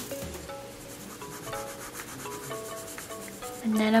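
Pencil rubbing and scratching across drawing paper as it shades in a sketch, over faint background music.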